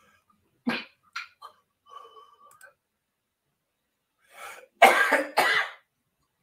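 A man coughing: a single short cough about a second in, then two hard coughs close together near the end.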